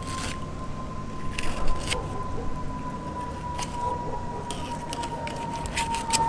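A flexible fillet knife cutting through a banded rudderfish to free the fillet, heard as a few short scrapes and taps. Under it run a steady low rumble and a thin, steady high tone.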